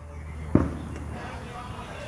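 A single short, sharp pop about half a second in, over a steady low hum.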